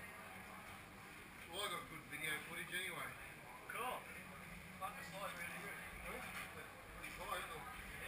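Indistinct voices talking in short phrases, with a steady low hum underneath.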